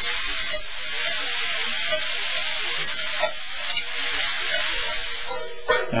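Ground chuck sizzling steadily as it browns in a hot stainless steel skillet while it is stirred and broken up.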